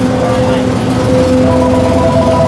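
Restaurant kitchen machinery humming steadily: a low drone with a couple of steady tones, and a higher pair of tones joining about one and a half seconds in.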